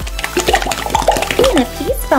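A toy slime blender's blending sound: a whooshing, water-like rush with gliding tones, loudest in the second second, over background music.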